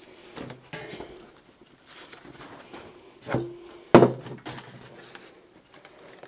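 Dry, glue-stiffened leaves crackling and rustling against a rubber balloon as the leaf-covered balloon is handled, with a short thud a little past three seconds and a sharp knock about four seconds in.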